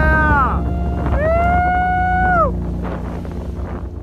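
Two long, high, excited whoops from a person's voice, each rising and then falling away, over wind buffeting the microphone and the low rumble of a motorboat at speed. Near the end the outdoor sound drops away.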